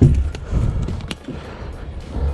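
Metal ammo cans being handled at a wooden wall: a heavy thump at the start, then a few sharp knocks, one about a second in, over a low rumble.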